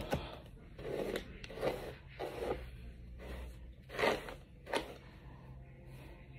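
A phone being set down with a soft knock, followed by a few soft, brief rustling and handling noises close to the microphone, the loudest about four seconds in.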